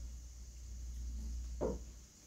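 Quiet room tone with a steady low hum, broken by one brief short sound about one and a half seconds in.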